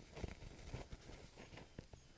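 Faint, irregular small crackles and rustles from a bundle of dry pine needles held over a lighter flame as it begins to catch.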